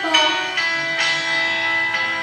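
A young girl singing solo: a short downward slide into one long, steady held note.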